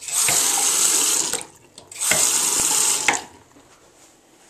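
Water running from a bathroom faucet into a sink in two spells of about a second each, each cutting off sharply.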